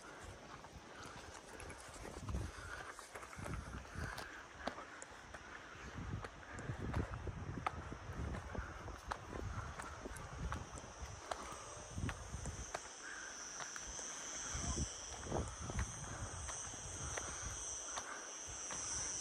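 Uneven footsteps on a dry dirt-and-stone hillside path, scuffing along at a climbing pace. About halfway through, a steady high-pitched insect buzz comes in and continues.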